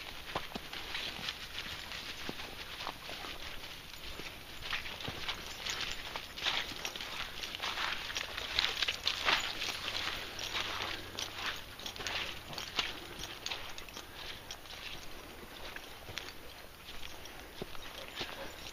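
Footsteps and running dogs' paws rustling and crunching through dry fallen leaves and bracken: an irregular run of crackles that grows busier in the middle.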